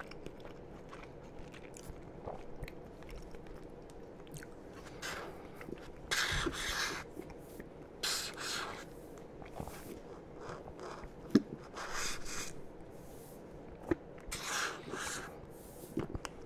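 Close-miked eating: chewing a toasted sandwich, with small wet mouth clicks. Several short, noisy sucking sips through a plastic straw from an iced blended drink are the loudest sounds.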